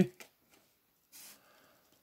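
Chrome-finish trading cards sliding against one another in the hands as the stack is worked through: a light click near the start and a brief, faint swish about a second in.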